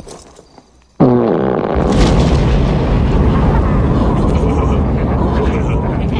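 A movie explosion sound effect: a sudden loud blast about a second in, then a long, steady rumble that carries on unbroken.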